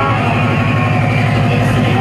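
Loud UK hardcore dance music over a club sound system, with a fast, rapidly repeating bass pattern driving the track.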